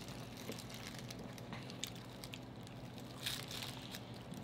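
Close-miked eating sounds: small wet mouth clicks of chewing, then a short crisper crunch about three seconds in as corn on the cob is bitten, over a faint steady low hum.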